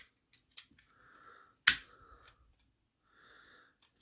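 Plastic Lego pieces clicking and knocking as a small Lego truck is handled and turned over in the hands, with one sharp click about halfway through and a few fainter ones around it.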